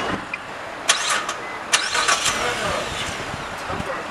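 A car engine being started: a few sharp clicks in the first couple of seconds, then a steady running noise.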